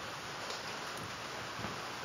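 Low, steady room hiss with a few soft footsteps on a hard floor.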